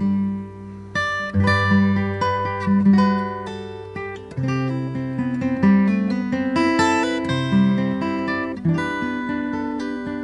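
Solo acoustic guitar played fingerstyle: plucked melody and chords over ringing bass notes, with a brief lull about half a second in before the playing picks up again.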